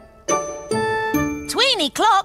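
Children's-TV jingle of chiming bell-like notes, three struck about half a second apart and each left ringing, with a voice coming in over it near the end.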